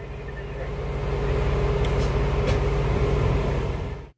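Fire engine's diesel engine and drivetrain running with a steady low hum that builds louder over the first second or so and then holds, as the pump shift is thrown from road mode to pump mode. This is the change in sound that tells the operator the pump has gone into gear.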